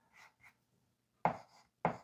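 Chalk writing a digit on a blackboard: two short, sharp chalk strokes about half a second apart, after a couple of faint rubs.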